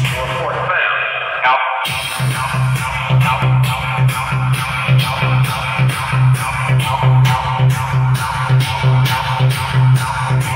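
Electronic dance music played loud through Dynatech DLA212 line array speakers. The bass drops out for a moment, then a heavy kick drum comes in about two seconds in and beats about twice a second.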